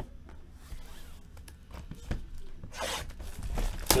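Plastic shrink-wrap being ripped off a sealed box of baseball cards: a few light handling knocks, then a loud tearing rasp for about the last second.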